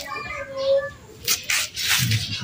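Birds chirping, followed in the second half by a few short, rough scraping rubs close by.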